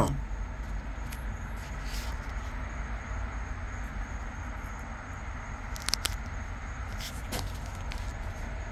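A steady low background hum with faint noise, broken by a few brief faint clicks about three quarters of the way through.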